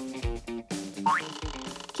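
Light background music with a steady beat; about a second in, a comic cartoon sound effect glides quickly upward in pitch.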